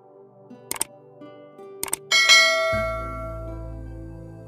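Subscribe-button animation sound effects over soft background music: two short mouse clicks about a second apart, then a bright bell-like ding that rings and slowly fades, with a deep bass note coming in under it.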